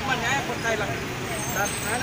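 People talking, over a steady low rumble of vehicle noise.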